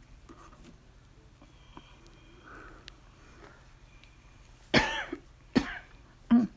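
A woman coughs twice near the end, two short, loud coughs less than a second apart.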